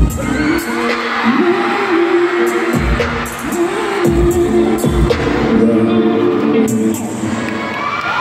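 Live pop music played loud over a concert PA, with sustained synth notes and a few deep bass-drum booms, and crowd noise beneath.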